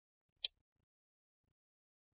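A single sharp click about half a second in: a plastic retaining clip of the Acer Spin 3 SP314-21 laptop's bottom cover snapping loose as a guitar pick pries the cover away from the palm rest.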